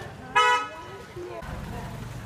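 A short vehicle horn toot about half a second in, with voices around it; a low steady engine rumble sets in near the end.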